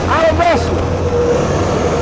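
City buses and traffic passing at an intersection: a steady low engine hum with a held, even tone over it, and one short spoken word at the start.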